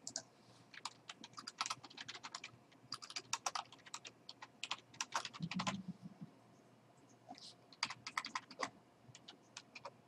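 Typing on a computer keyboard: quick runs of keystrokes with short pauses between them, as a short name is typed and then edited.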